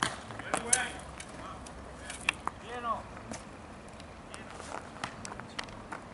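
Faint voices of people calling out across the field in short fragments, with scattered light clicks and taps over a steady outdoor background.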